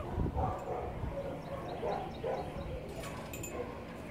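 Faint dog barking at intervals.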